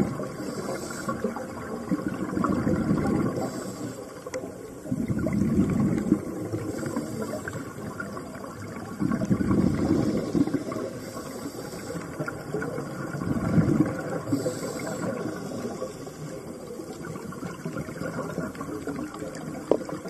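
Scuba regulator breathing underwater: a short hiss of inhalation, then a rumbling burst of exhaled bubbles, repeating about every three to four seconds, four breaths in all.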